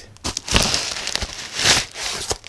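Crinkling and rustling of a white padded plastic mailer being opened and handled, with a small cardboard box slid out of it; the rustle starts about half a second in and is loudest near the end.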